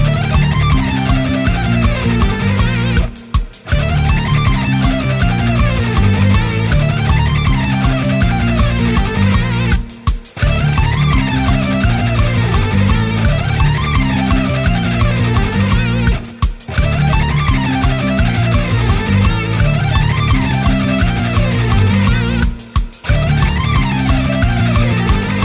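Ibanez electric guitar playing a fast alternate-picked lick high on the neck, the notes running up and down in pitch over a backing track. It pauses briefly about every six and a half seconds, four times, and the tempo steps up from 160 to 180 BPM.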